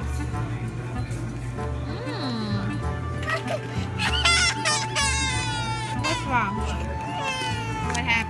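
Background music with a steady beat. From about three and a half seconds in, a toddler whines and cries over it in high, falling wails.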